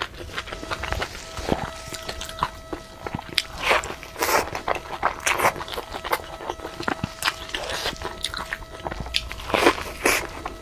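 Close-miked eating: a baked, filled flatbread torn open and bitten, with crisp crackling bites and wet chewing in an irregular run. The loudest bites come in the middle and again near the end.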